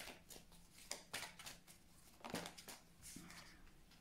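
Faint handling of oracle cards: a scattering of soft flicks and slides as cards are thumbed off a deck held in the hands, and one card laid down on the table.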